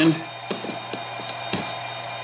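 A few sharp little clicks of pliers on HO scale model track as a track nail is gripped and pulled out, the strongest about a second and a half in, over a steady low hum.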